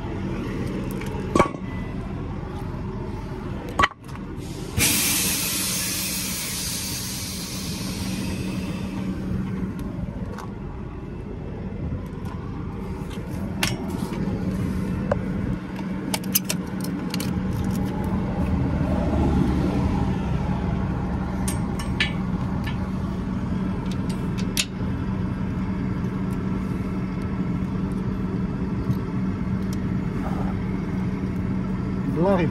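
Truck diesel engine idling with a steady hum. About five seconds in comes a loud hiss of compressed air lasting around four seconds. Then scattered metal clinks and knocks from the Ringfeder drawbar coupling and air-line fittings.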